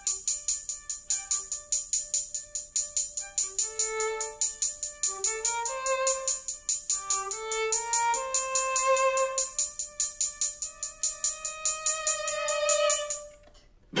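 Violin playing short rising phrases and held notes over a fast, steady, high electronic ticking from a drum machine. Both stop suddenly near the end.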